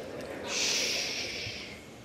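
A sharp, breathy hiss of about a second close to a microphone, like a person's exhale or sniff, over the faint murmur of a crowded chamber.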